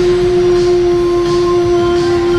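A man singing one long, steady 'ooh' note.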